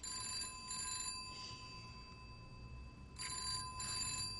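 Telephone ringing in a double-ring pattern, two short rings close together, heard twice: once at the start and again about three seconds in. The call is going unanswered.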